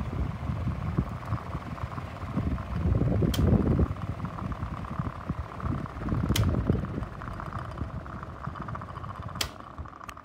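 Polar Wind electric fan running, a steady whir with rumble from the airflow on the microphone held close to its grille; it is 'just the fan doing its thing'. A sharp click sounds about every three seconds, three times.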